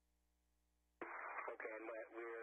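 Near silence with a faint steady hum for about a second, then a voice starts talking suddenly, thin and narrow-sounding like speech over a radio link.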